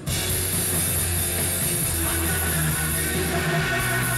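Live rock band playing, with drums and electric guitar.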